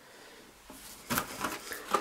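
Cardboard firework packets being handled and pulled from a cardboard box: a second of quiet, then a few short scrapes and knocks.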